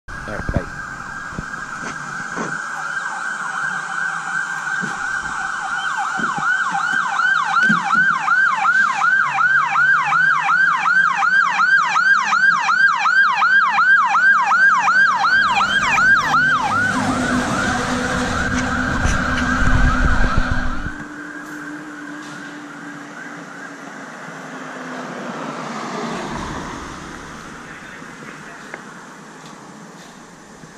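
Fire engine responding with its siren: a steady wail that changes to a fast yelp of about four sweeps a second. The truck's engine then passes close and loud about two-thirds of the way through, and the siren fades off.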